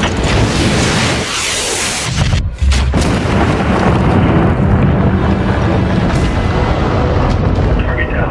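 Cinematic trailer-style sound design over music: a rising whoosh swell, a sudden brief cut-out about two and a half seconds in, then a deep boom hit that rolls into a sustained low rumble with the music.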